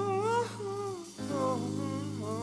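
Late-1970s Southern rock recording: a lead melody line held and bending in pitch over a steady low bass note, with a short dip about a second in.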